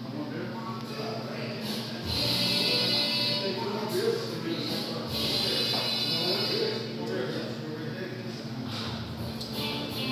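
Busy bar ambience: background music mixed with indistinct crowd chatter over a steady low hum. The music swells louder twice, about two and five seconds in.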